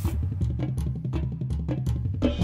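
Marching band show music in a drum-led passage: repeated drum hits over low bass notes, with the upper melody mostly dropped out.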